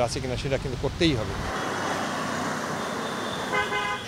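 Steady road traffic noise, with a short car horn toot near the end.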